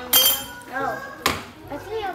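Kitchenware clinking: a sharp clink with a short high ring near the start and a second knock about a second later, among children's voices.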